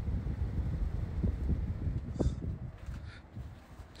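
Outdoor unit of an Alpha E-Tec hybrid heat pump running at full output: a low, steady rumble from its fan and compressor that eases slightly near the end.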